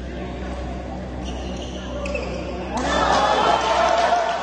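Badminton rally on an indoor court: a few sharp racket-on-shuttlecock hits and squeaks of shoes on the court floor, then voices break out loudly about three seconds in.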